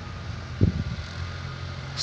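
Steady low mechanical hum in the outdoor background, with a brief faint low sound a little over half a second in.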